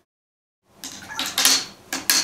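Sugar water in a glass fish tank being stirred hard with a stick: splashing with sharp, clattering knocks, after about half a second of dead silence.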